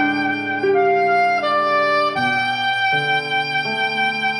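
Jazz big band music: a saxophone section plays sustained chords that move to a new chord about every three-quarters of a second, with piano.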